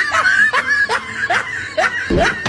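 A person laughing in a run of short, repeated "ha" syllables, about two to three a second.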